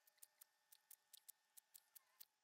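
Near silence with faint, short, high-pitched clicks at uneven spacing, about five a second.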